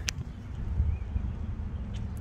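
Low, steady background rumble with a single short click just after the start.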